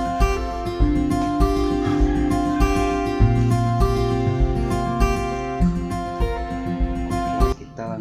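Background music led by acoustic guitar with a steady beat. It drops away sharply near the end.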